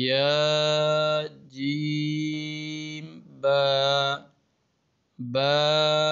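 A man's voice reciting Arabic letter names in a slow, drawn-out chant: four long held syllables with short pauses between them.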